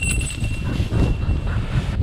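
Wind buffeting the microphone over rustling dry grass as a hunter walks through a field, with a faint steady high tone for the first second and a half.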